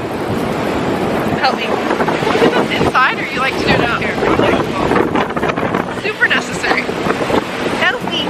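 Wind buffeting the microphone, with women's voices and laughter mixed in.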